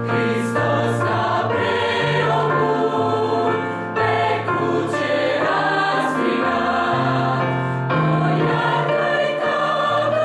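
Mixed church choir of women's and men's voices singing a hymn in Romanian, in parts, with sustained low bass notes under changing harmonies, accompanied on an electric keyboard.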